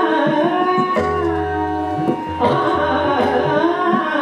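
Hindustani classical vocal in raag Bairagi Bhairav: a woman singing gliding, ornamented phrases, accompanied by sustained harmonium and tabla strokes, with a deep low tabla tone ringing for about a second about a second in.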